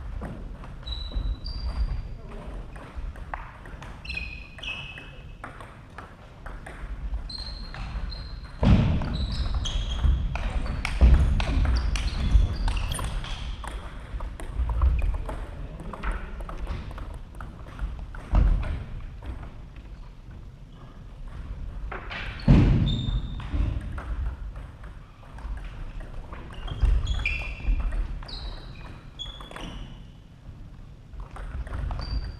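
Celluloid-type table tennis balls ticking off tables and bats in irregular clusters, mixed with a few loud sharp knocks and shuffling footsteps on a wooden sports-hall floor.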